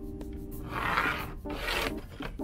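Pencil scratching along the edge of a square while drawing a line on a sheet of Kydex, in two strokes: a longer one about a second in and a short one near the end.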